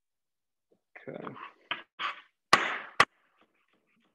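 Two sharp knocks of a chef's knife on a plastic cutting board, about half a second apart, as chopping of garlic cloves begins.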